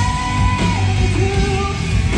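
Three-piece rock band playing live at full volume: distorted guitar, bass and drums, with a held high melody note that steps down in pitch about two-thirds of a second in.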